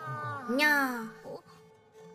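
A single drawn-out, meow-like vocal call lasting about a second, sliding down and then rising and falling in pitch, over faint steady background tones.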